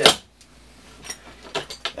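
Clogging shoe taps striking a plywood floor: one loud tap at the start, then a few lighter taps near the end as the step sequence finishes.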